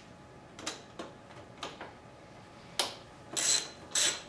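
Ratchet wrench clicking as the bolts on a Honda CX500's thermostat housing are worked loose: a few scattered single clicks at first, then louder, quicker strokes near the end.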